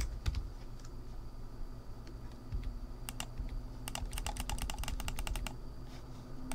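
Computer keyboard and mouse clicks: a few scattered clicks, then a quick run of keystrokes about four seconds in that lasts a second and a half, over a low steady hum.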